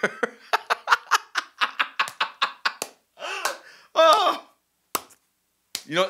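A man laughing into a microphone: a quick run of short breathy laughs, about five a second, then two louder voiced laughs a second or so later.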